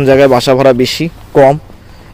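A man talking in a steady narrating voice, in two short phrases; only speech is heard.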